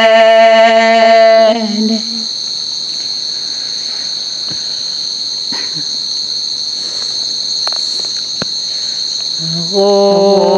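A steady, unbroken high-pitched insect trill, cricket-like, fills a pause in unaccompanied Karen chanted singing. A held sung note ends about a second and a half in, and the singing comes back just before the end.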